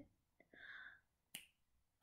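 Near silence broken by a faint, short breathy sound and then a single sharp finger snap about a second and a half in.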